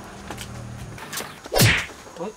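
A single quick whoosh-and-whack hit, about one and a half seconds in and lasting under half a second, as a metal pan strikes a man's head.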